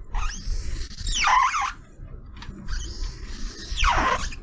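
Marker pen squeaking across a writing surface as letters are written out: two scratchy strokes, each ending in a squeal that falls in pitch.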